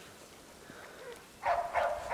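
Australian Shepherd giving two short, sharp barks in quick succession about one and a half seconds in, after a quiet stretch.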